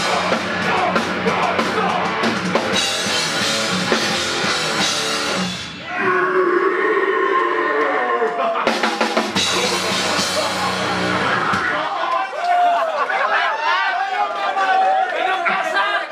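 Heavy metal band playing live, with distorted guitars, bass and drum kit with cymbals; the bass and drums drop out for a sparser passage about six seconds in, crash back in about three seconds later, and stop about twelve seconds in. Then the crowd shouts and chatters.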